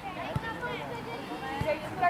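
Faint voices of players calling out across a football pitch, with two soft knocks, one about a third of a second in and one near the end.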